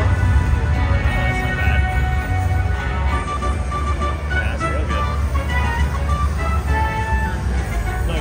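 Buffalo Gold slot machine's bonus-round music and short chiming tones, over a steady low rumble of casino-floor noise.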